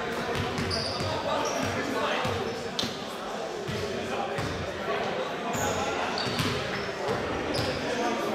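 A basketball being dribbled on a hardwood gym floor, bouncing over and over, under constant echoing chatter in a large gym, with a few short high squeaks.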